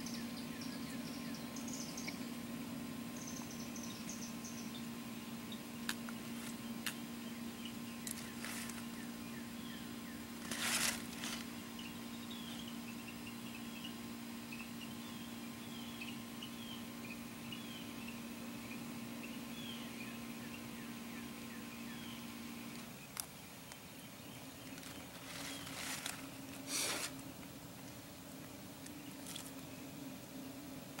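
Faint outdoor ambience: small birds chirping in the background over a steady low hum, which shifts about 23 seconds in. A few brief scuffing noises stand out, the loudest about 11 seconds in and again around 26–27 seconds.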